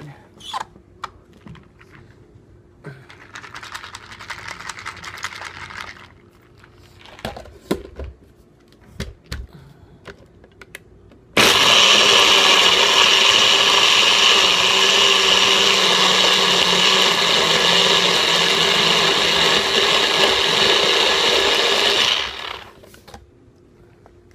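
Personal blender running steadily for about ten seconds, starting abruptly partway through and cutting off near the end, as it blends ice and almond milk into a thick shake. Before it starts there are a few scattered clicks and knocks.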